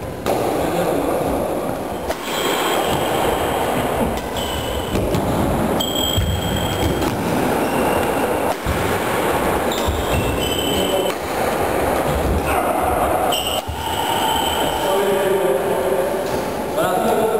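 Badminton rally in a sports hall: athletic shoes squeaking briefly on the wooden floor and sharp racket strikes on the shuttlecock, over a din of voices echoing in the hall.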